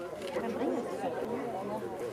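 Indistinct chatter of several voices talking at once, with no words clear.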